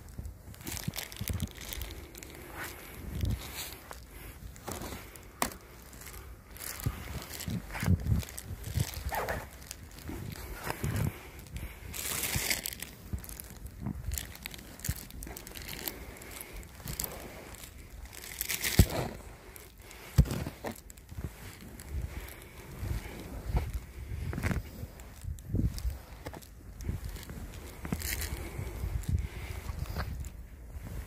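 Snow being pushed and swept off a car with a snow brush: irregular crunching and scraping strokes, with two louder sweeps about twelve and nineteen seconds in.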